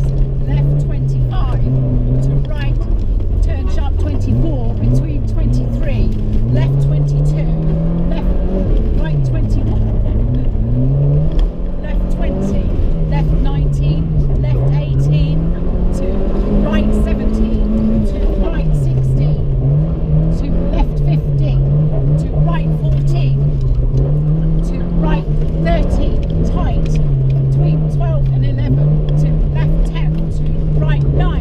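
Car engine heard from inside the cabin, revving up and dropping back again and again as the car accelerates and slows between cones on a tight autotest course. The revs swing up and down more quickly in the second half, and short clicks and rattles come through throughout.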